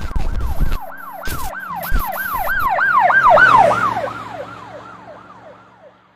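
Emergency vehicle siren wailing in a fast up-and-down sweep, about three cycles a second, swelling louder and then fading away and dropping in pitch as it recedes. Bursts of static crackle come in the first two seconds.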